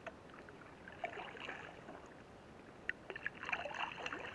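Canoe paddle strokes in water: a splash and swirl about a second in and another near the end, with small drips between, in a steady rhythm of a stroke every two seconds or so.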